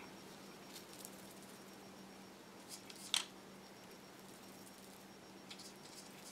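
Quiet room with a steady low hum and a few faint clicks and rustles of hand work: a fingertip rubbing mica powder onto a polymer clay piece and a small powder jar being handled, with one sharper tick about three seconds in.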